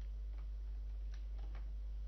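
A few faint computer keyboard keystrokes, spaced irregularly, over a steady low hum.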